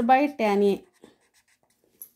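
A woman speaking Kannada for under a second, then a pause with faint scratching of a pen writing on paper.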